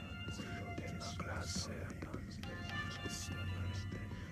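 Background music of long held notes, with breathy whispering recurring in it.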